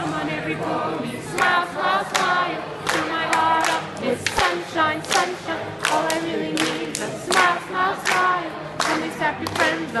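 A crowd singing together and clapping in time, about two claps a second.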